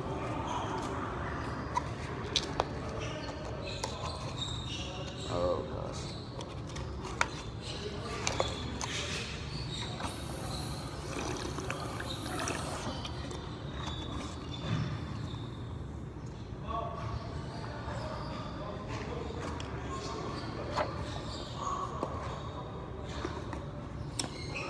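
Faint, indistinct voices in a large room, with scattered light clicks and knocks from a plastic supplement tub being handled. A short hiss comes about ten seconds in.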